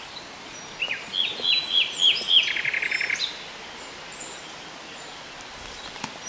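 A songbird sings one phrase about a second in: a run of about six clear, down-slurred notes ending in a fast buzzy rattle. After it there is only a steady faint hiss.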